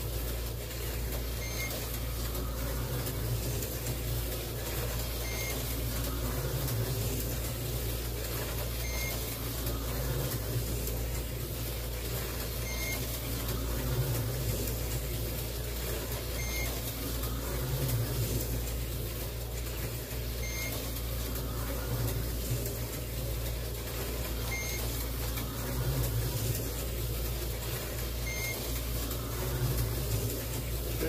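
Tyco 440 X2 slot cars running laps, their small electric motors whirring and swelling every few seconds as they come round, over a steady hum. A short electronic beep from the race computer sounds about every four seconds.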